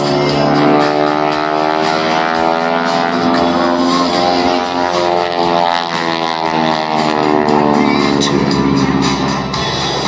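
Aerobatic propeller plane's engine droning overhead, its pitch slowly rising and then falling over several seconds, with music playing underneath.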